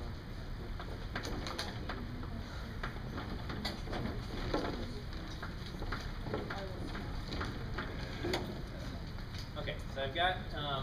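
Chalk on a blackboard, short sharp taps and scrapes scattered through, as a small cube is drawn. A steady room hum lies beneath.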